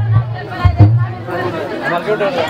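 Several people talking at once over music, with two low thumps in the first second.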